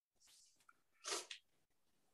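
Near silence, broken about a second in by one short breathy sound, a quick breath or throat noise picked up by the lecture microphone.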